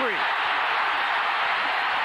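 Football stadium crowd cheering steadily as a ball carrier breaks a long run, heard through an old television broadcast.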